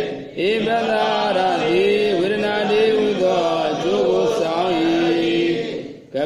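A single voice chanting Pali text in the Burmese recitation style, holding long notes that glide up and down. There is a short breath pause just after the start and another near the end.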